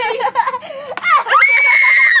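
A girl's voice making wordless vocal sounds, then about halfway in a loud, high-pitched scream held steady for most of a second.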